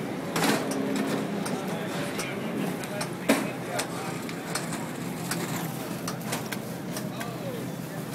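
Voices and chatter of people around the cars, over a steady low hum, with scattered clicks and one sharp knock about three seconds in.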